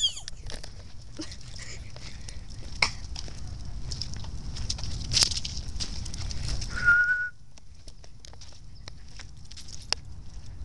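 Rumble of wind and handling noise on a hand-held camera microphone while walking, with scattered small clicks. A single short, high whistle-like note sounds about seven seconds in.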